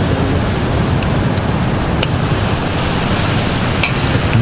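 Steady wash of sea surf breaking on the beach, mixed with wind rumbling on the microphone. A few light clicks, spoons against bowls, sound over it, the clearest near the end.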